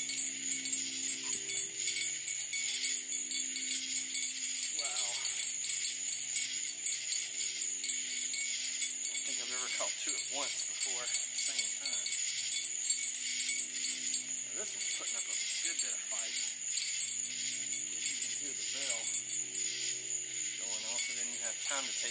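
A small bite-alarm bell clipped to a fishing rod jingles as a catfish is reeled in. Under it runs a steady high-pitched chorus of night insects.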